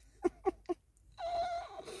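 A dog whimpering: three short whimpers in quick succession, then one held high whine about a second in.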